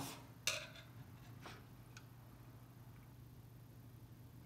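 A few small metal clicks from handling the T-handle and gold cap on top of a TG611 turbine governor: a sharp click about half a second in, then two fainter ones around one and a half and two seconds, over a faint steady low hum.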